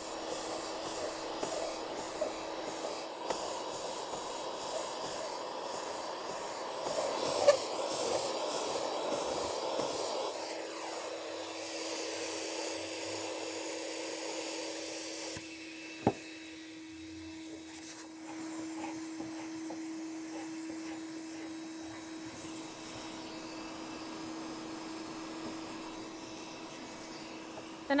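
Electric heat gun blowing steadily with a constant hum while softened paint is scraped off an old wood window sash, the scraping coming and going as stretches of rasping hiss. Two sharp knocks, about seven and sixteen seconds in.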